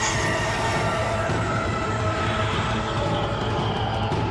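A dramatic sound effect: a steady low rumble with high screeching tones that slowly fall in pitch, laid over an ominous musical score.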